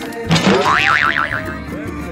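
Dance music playing, with a springy cartoon 'boing' sound effect a little after the start: a sweep followed by a tone that wobbles rapidly up and down for about a second.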